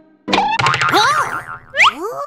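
Cartoon sound effects as a small box's lid springs open: a quick downward swoop and a fast rattle, then springy boing and whistle-like glides, the last ones rising steeply near the end.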